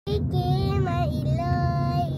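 Young girl singing, with long held notes. A steady low car-cabin rumble runs underneath.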